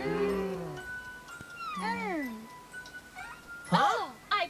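Cartoon soundtrack: a held hum-like pitched sound in the first second, then a short rising-and-falling glide over a steady tone about two seconds in, and a louder meow-like sliding vocal just before the end.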